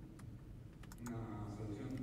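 A few faint clicks in the first second, like keys or a mouse tapped at a lectern, then a faint held voice sound in the second half as the speaker is about to talk.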